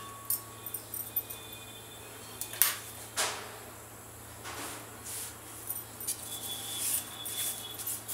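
Light metallic clicks from steel pan tongs being released and drawn away in the first second or so, then a few brief scattered rustles over a steady low hum.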